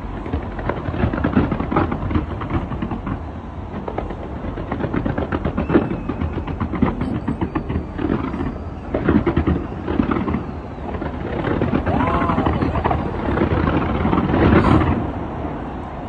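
Fireworks going off in a dense, continuous run of bangs and crackles, swelling in waves and loudest about a second before the end.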